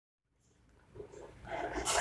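Silence, then faint room noise fading in from about halfway through and growing louder. It ends in a short, breath-like hiss just as speech begins.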